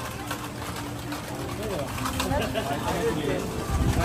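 Background chatter of several voices with faint music mixed in, at moderate level and no single loud event.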